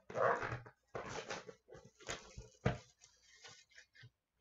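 Clear plastic shrink wrap being torn off a hobby box of trading cards and crumpled by hand: several short crinkling bursts, with a sharp snap near the middle.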